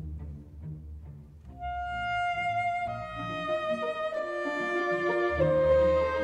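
Slow classical music for saxophone and string orchestra. Low strings play softly, then about a second and a half in a high solo line enters with long held notes over them.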